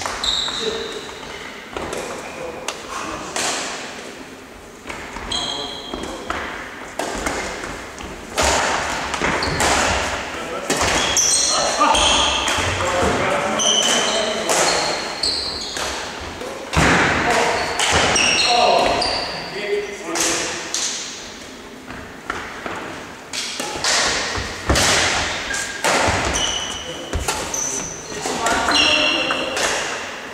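Badminton doubles rallies in a reverberant sports hall: irregular sharp cracks of rackets striking the shuttlecock, thuds of footsteps and short high squeaks of shoes on the wooden floor.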